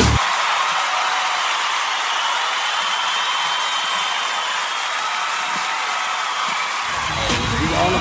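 Thin, bass-less music bed with a steady noisy, crowd-like wash and faint gliding tones, part of a radio-station promo. A voice comes in near the end.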